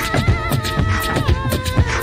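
Live-looped beatbox groove: layered mouth percussion and a deep kick on a steady beat, under a high voice that warbles at first, holds, then drops in pitch a little past halfway.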